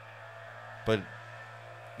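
A pause in a man's talk, broken by one short spoken word about a second in, over a steady low hum.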